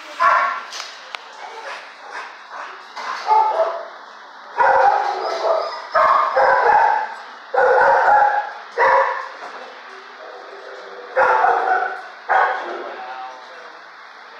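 A dog barking: about nine loud barks and short bark bouts, starting suddenly and spaced irregularly, with quieter gaps between them.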